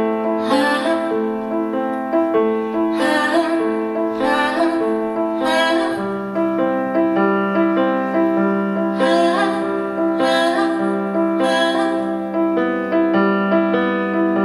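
Music: a grand piano playing sustained chords, with a woman singing over it in short phrases.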